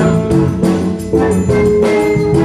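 Big band playing live: the horn section of saxophones and brass plays ensemble lines over guitar, bass and drums, in a run of repeated accented notes.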